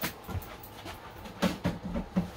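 A step ladder being moved and set in place: a sharp click at the start, then a few short knocks and bumps near the end.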